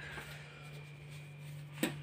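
Quiet room tone with a steady low hum, and a single short click near the end.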